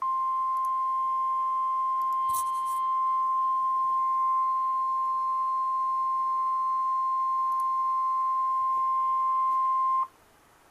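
NOAA Weather Radio's 1050 Hz warning alarm tone: one loud, steady, unwavering tone that sounds for ten seconds and cuts off suddenly. It signals that a warning message follows, here a severe thunderstorm warning.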